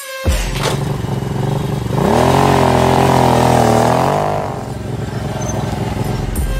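Motorcycle engine revving: it runs steadily, climbs in pitch about two seconds in, holds high with small wavers, then drops back toward idle.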